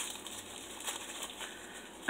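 Tissue paper rustling and crinkling faintly as a small wrapped item is unwrapped by hand, with a few soft ticks of handling.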